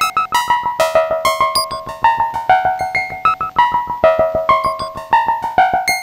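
Synton Fenix analog modular synthesizer playing a fast repeating sequence of short, bright pitched notes, the pitch stepping about twice a second over a rapid ticking pulse. The sequence runs through the Fenix 2D's delay with no voltage on its time CV input.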